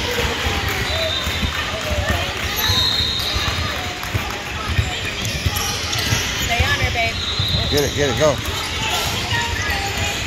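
Basketball bouncing on a hardwood gym floor during a game, with short low thuds throughout, and players' and spectators' voices in the large hall.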